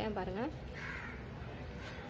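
A single short bird call, harsh and noisy in tone, about a second in, just after a brief spoken word.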